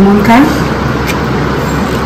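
Steady rushing background noise, with a brief spoken word at the start and one light click about a second in.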